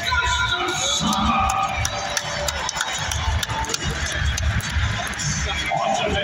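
Music over an arena's PA system with a steady thumping beat, an announcer's voice over it, and a crowd cheering.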